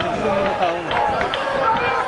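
Several voices calling and talking over one another at a football match, with no clear words.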